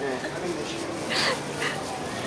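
Muffled, stifled laughter and breathy sounds from a girl with her mouth stuffed full of cotton candy.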